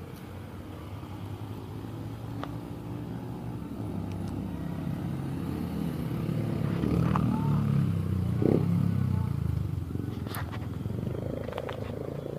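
A motor vehicle's engine passing by: a low rumble that grows louder for about eight seconds, then fades. A few faint clicks sound over it.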